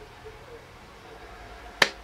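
A single hand clap, sharp and brief, near the end.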